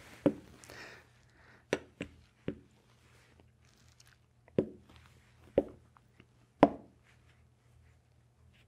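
Wooden chess pieces being picked up and set down on a board, giving a series of about seven short knocks at uneven intervals, the loudest near the end.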